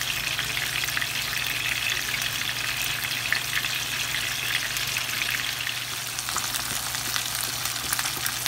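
Fish steaks shallow-frying in hot oil in a pan: a steady sizzle dense with small crackles and pops.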